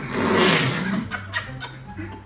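A loud, breathy vocal burst from someone with a mouthful of food, muffled and fading over about a second, followed by a few faint mouth clicks.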